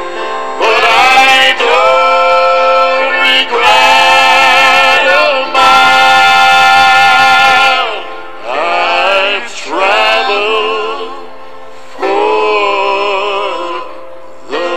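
Southern gospel song: a male voice sings long held notes with vibrato over instrumental backing, the longest and loudest held note ending about eight seconds in, followed by softer phrases.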